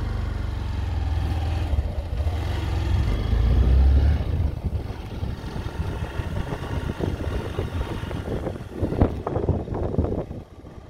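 Motorcycle running while being ridden, with wind rumbling on the microphone. The low rumble is loudest about four seconds in and then eases.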